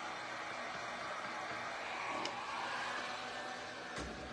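Handheld heat gun blowing hot air onto a rub-on transfer to soften it so it lifts off easily: a steady rush of fan and air that fades near the end.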